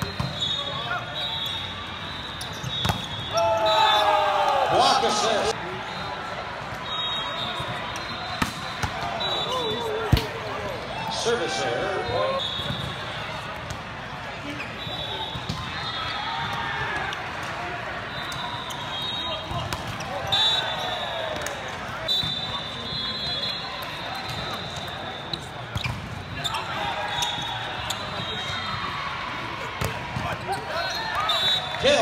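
Indoor volleyball play: sharp slaps of hands and arms on the ball and the ball striking the court, with players' shouted calls, echoing in a large hall over a steady crowd murmur. The loudest hit comes about ten seconds in.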